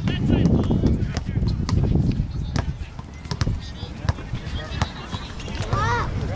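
Soccer balls being kicked on a grass field, a scattering of short sharp thuds, with voices of children and adults in the background that rise just after the start and again near the end.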